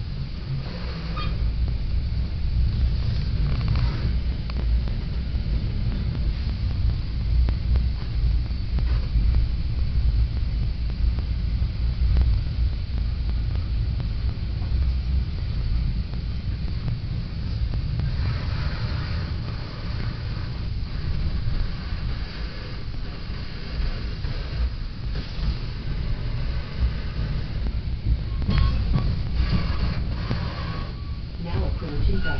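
Steady low rumble inside a moving Metra Rock Island commuter train's passenger car, heard while the train runs.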